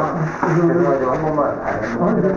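Clothing rubbing against the microphone of a concealed body-worn camera, under a security officer's voice asking in Korean to check inside a bag.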